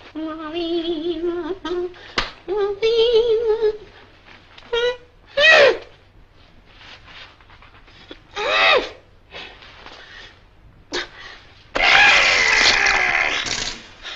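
A man humming a wavering tune for the first few seconds, then a few short rising-and-falling squeaks. Near the end comes a loud spluttering rasp, about two seconds long, as icing is forced out of a pastry bag.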